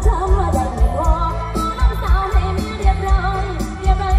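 Live Thai mor lam stage-show music played loud through a PA: a sung melody with bending, sliding pitch over a steady, heavy drum beat.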